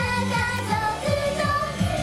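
Young female voices singing a Japanese idol-pop song live into handheld microphones over an amplified pop backing track with a steady beat.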